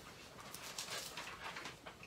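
Faint rustling of thin Bible pages being leafed through, a scatter of soft brushing strokes.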